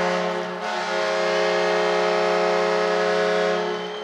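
Arena goal horn sounding a steady held chord of several tones for a home-team goal, fading out near the end.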